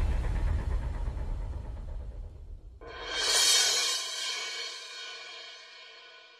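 Intro sound effects for a channel logo. A deep boom dies away over the first couple of seconds. Just before the three-second mark a bright, shimmering metallic swell comes in, rings, and fades slowly.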